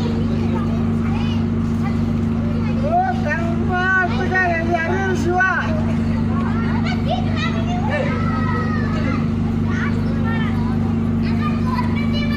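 The LED-screen truck's engine running steadily, a low even hum, with children's voices chattering over it in the middle of the stretch.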